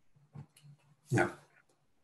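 A dog barks once, a single short bark about a second in, after a fainter short sound just before it.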